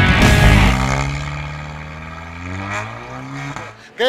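Rock music ends in the first second. Then a race car's engine accelerates, its pitch rising steadily for about three seconds before it fades.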